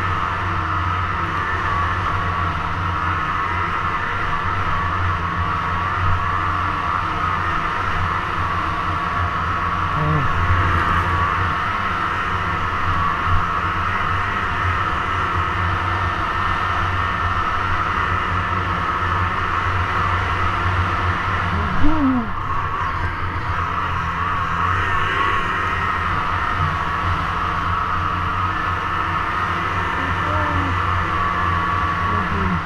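Snowmobile engine running steadily at speed through deep powder, heard from on board the sled. Its drone holds constant, with one brief louder sound about two-thirds of the way through.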